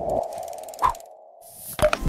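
Electronic sound effects for an animated logo sting: a held synthetic tone with a short rising blip about a second in, a brief pause, then a whoosh and a few sharp clicks near the end.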